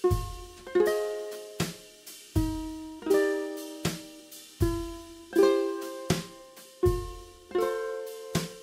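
Kala ukulele, capoed at the third fret, strummed in a steady rhythm through the chords Em, Dm7, Cmaj7, A and D. There is a chord stroke about every three-quarters of a second, each with a low thump at its onset.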